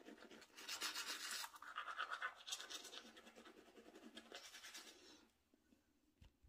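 A manual toothbrush scrubbing teeth with quick back-and-forth strokes through toothpaste foam, stopping about five seconds in.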